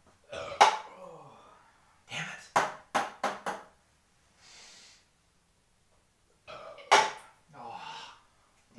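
Ping pong balls clicking sharply against the table and plastic cups: one hit near the start, a quick run of bounces about two and a half to three and a half seconds in, and another hit about a second before the end, among short wordless exclamations.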